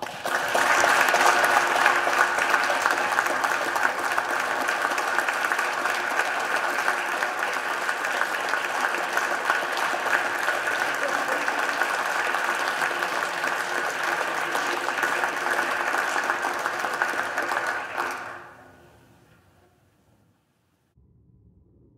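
Applause from a roomful of people, breaking out at once and running steadily for about eighteen seconds before dying away.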